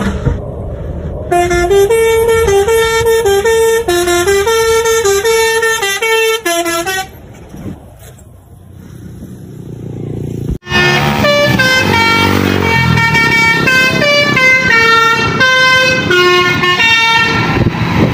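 Trucks' multi-tone musical air horns playing short tunes. A melody of held notes stepping between pitches runs for about six seconds. After a lull of engine and road noise, a second, fuller tune starts suddenly about ten and a half seconds in.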